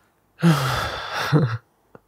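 A man sighs close to the microphone: one breathy exhale about a second long, his voice sounding low at its start and again near its end.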